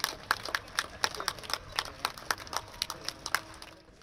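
A rapid, irregular series of sharp clicks, several a second, fading out near the end.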